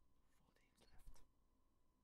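Near silence: quiet room tone with a faint, barely audible breath or whisper-like mouth sound about a second in.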